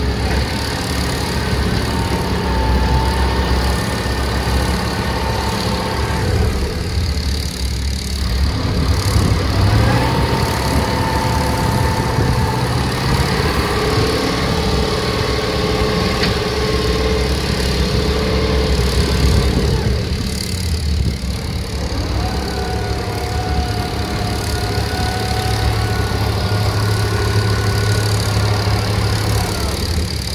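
KamAZ dump truck's diesel engine revving hard under load while its rear wheels spin in deep mud. The truck is stuck. The revs are held high for long stretches and drop back twice, about seven and twenty seconds in.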